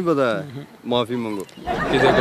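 Men's voices in conversation: a loud, drawn-out exclamation that falls in pitch, a short phrase, then several voices talking over one another with laughter near the end.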